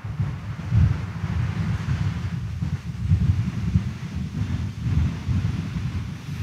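Low, uneven rumble with a soft hiss: the background noise of a large, crowded church during a silent pause in prayer.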